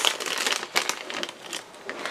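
A small cut-open blind-bag packet crinkling in the fingers with irregular crackles as it is worked open and the toy figure is pulled out.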